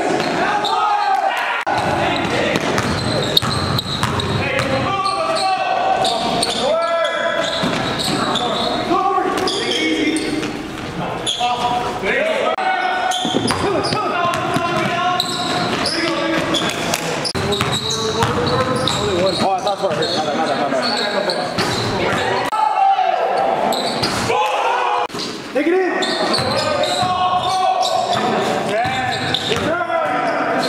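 Basketball game sounds in a gymnasium: a ball bouncing on the hardwood floor amid steady voices of players and onlookers.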